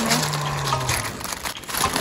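Footsteps crunching over loose beach gravel, a rough crackling that runs unevenly throughout. A person's low, steady hum sounds for about the first second.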